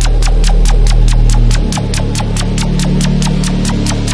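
Tearout dubstep: a heavy, droning synth bass under fast ticking hi-hats, about five a second. The bass dips about one and a half seconds in and comes back on a different note.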